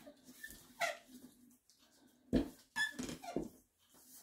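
Wooden rolling pin knocking and rolling over dough on a tabletop, with a few short high squeaks; the loudest knock comes a little past halfway.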